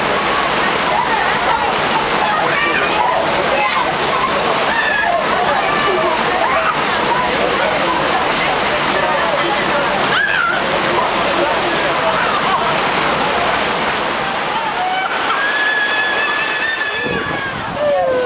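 Steady rush of churning pool water, with a babble of distant voices and shouts over it.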